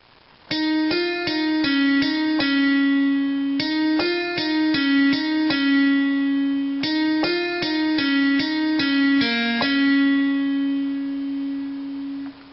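Casio electronic keyboard played slowly one note at a time: a pop song's intro riff in single notes rather than chords. The same short phrase comes three times, the last ending on a long held note that fades near the end.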